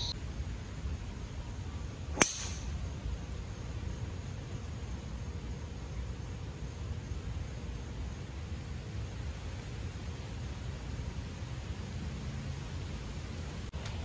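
A single sharp crack of a golf driver striking the ball about two seconds in, with a brief high ring, over a steady low rumble of wind on the microphone.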